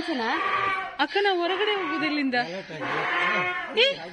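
A donkey braying in several long, drawn-out cycles that rise and fall in pitch.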